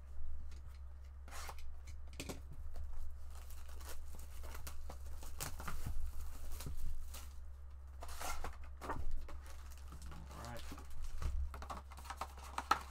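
A sealed Panini Mosaic basketball trading-card hobby box being torn open and its foil packs pulled out. The sound comes as a series of separate rips and crinkles of wrapping and cardboard.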